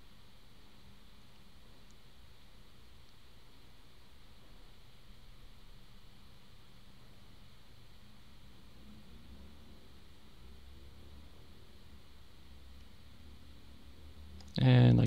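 Faint, steady room tone: microphone hiss with a low hum, the low rumble a little stronger in the second half, and no clicks.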